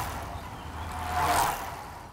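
A whoosh sound effect from an outro logo sting: a noisy swell that rises to a peak about a second and a quarter in, then fades away over a faint low hum that stops shortly after.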